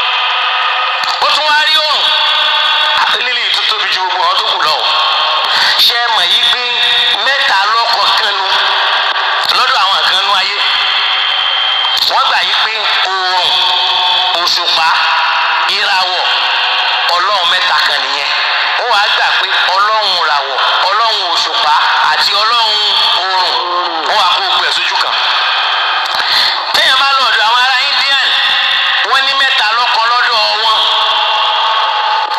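Continuous speech from a single speaker, thin and tinny with no low end, as if through a radio or small loudspeaker.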